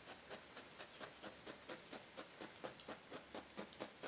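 Felting-needle pen tool stabbing rapidly into wool batt: faint, fast, even soft pokes, about five a second, tacking loose wool down over a bald spot.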